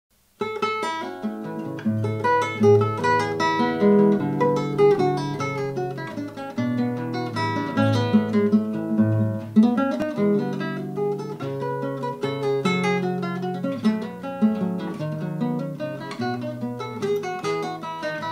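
Solo acoustic guitar music, plucked melody with chords, starting about half a second in.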